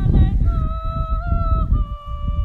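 A woman's voice holding one long, steady, high note, the pitch dipping slightly near the end, over heavy wind rumble on the microphone.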